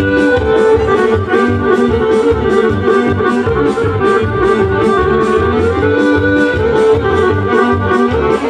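Serbian kolo folk dance music led by accordion, a quick tune over a steady beat.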